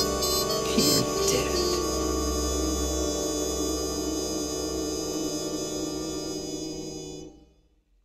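An orchestra with strings holds the final chord of a jazz song, with a few sliding notes about a second in. The chord rings on and then fades out quickly about seven seconds in, ending the piece.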